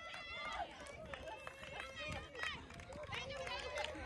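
Faint voices of several people talking at a distance, quiet and scattered, with no single sound standing out.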